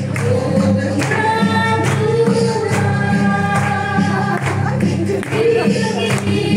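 A crowd singing a Mizo zai together, many voices on one held, swaying tune, with a struck beat about once a second.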